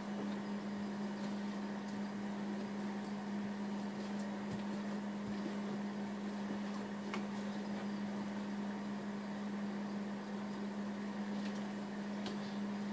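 A steady low hum with a hiss behind it, and a few faint taps of a knife against a plastic cutting board as raw fish is sliced.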